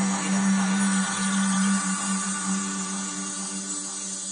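Ambient electronic music: a held synth chord over a steady low drone, with no beat, gradually getting quieter.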